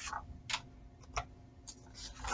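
A few faint, short clicks spaced well under a second apart, over low room hiss.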